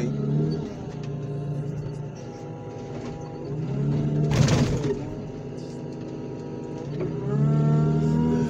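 Diesel engine of a loader working its hydraulics, revving up and settling back down several times as the grapple moves. About four and a half seconds in there is a short harsh crunch as the grapple pushes into the crushed car body.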